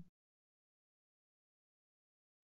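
Silence: a blank gap in the audio with no sound at all.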